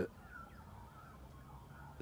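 Quiet riverside bush ambience with a few faint, distant bird chirps.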